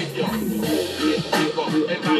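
A DJ mix played from Serato DJ controllers: music with a steady beat.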